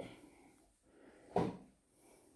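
A panelled wooden cupboard door being shut: a light knock at the start and a louder thump about a second and a half in.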